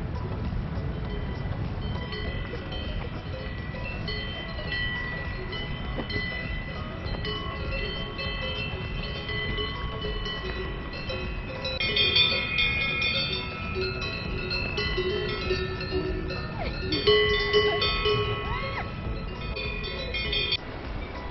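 Several cowbells worn by grazing cows, clanking and ringing with overlapping bell tones; the ringing grows louder and busier about twelve seconds in and again near the end.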